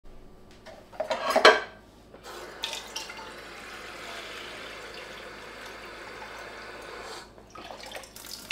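Kitchen faucet running water into a metal pot, with a louder splash or clatter about a second in, then a steady run for about five seconds until the tap is shut off near the end.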